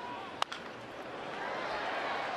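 A single sharp crack of a bat meeting a pitched baseball, a ball taken off the end of the bat, about half a second in, over ballpark crowd noise that grows a little louder afterwards.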